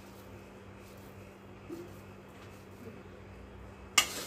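Quiet room tone with a steady low hum and a few faint soft sounds as a hand squeezes crumbly churma mixture into a ladoo. A single sharp click comes right at the end.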